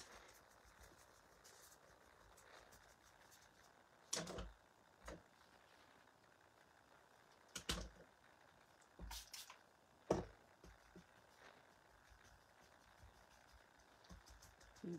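Quiet room tone broken by about five brief knocks and taps, the loudest about ten seconds in, as a paintbrush and small craft items are picked up and set down on a work table.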